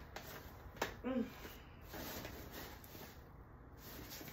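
A sharp click of the bassinet's frame or fittings being handled, followed at once by a short hummed vocal sound, then quieter handling noise of the bassinet's fabric and frame.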